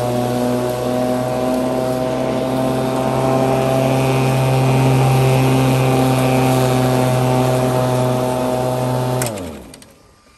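Greenworks 12-amp corded electric lawn mower running steadily while it cuts through tall grass, its motor and blade giving a steady hum. Near the end the motor cuts off with a click and winds down, its hum falling in pitch as the blade slows.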